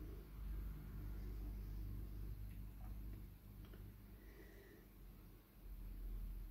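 Faint room tone with a steady low hum and a few faint ticks around the middle.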